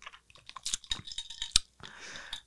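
A person sipping and swallowing a fizzy coffee drink close to a microphone: a run of small, irregular wet mouth clicks and gulps, with one sharper click about one and a half seconds in.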